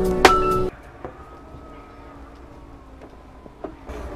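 Background music with a steady beat that cuts off suddenly under a second in. It gives way to a faint steady whine and hum, with a few small clicks near the end.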